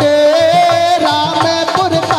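Indian devotional music: a harmonium holds a long melodic line over a steady dholak drum beat.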